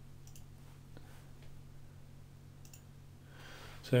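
A few faint, sharp clicks of a computer mouse, used to step through presentation slides, over a steady low electrical hum.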